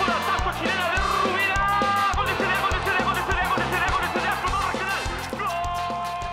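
The band's song playing on: drums and bass keep a steady beat under horn and keyboard lines, and two notes are held from about five and a half seconds in as the song ends.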